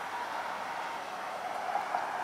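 A steady mechanical hum with a hiss, and a faint steady tone under it that sits lower in pitch in the second half.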